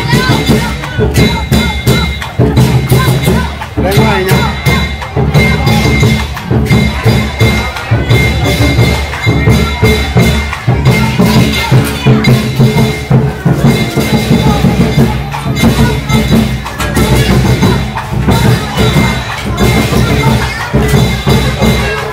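Vietnamese lion dance percussion: a drum beaten in a rapid, continuous rhythm with clashing cymbals ringing over it.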